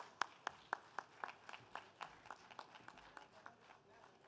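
One man clapping his hands at a podium microphone: a steady run of sharp claps, about four a second, fading away over a few seconds.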